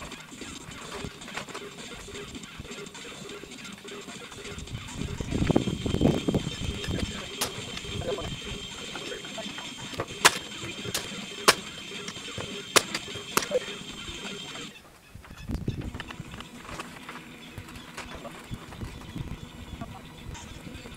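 Building work on a wooden lean-to frame: a stretch of handling and bumping of timber, then about half a dozen sharp, separate knocks spread over several seconds.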